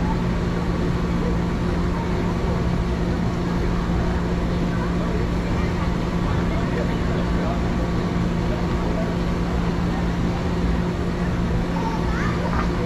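Outdoor crowd ambience: many people talking indistinctly at once, over a steady low hum.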